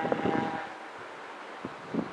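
Quiet outdoor background noise, a faint even hiss, with two small clicks near the end.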